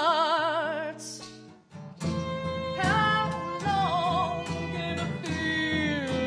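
Live acoustic band music with violin, acoustic guitar and piano in an instrumental passage between sung lines: a held note with strong vibrato ends about a second in, the music nearly stops for a moment, then the band comes back in about two seconds in.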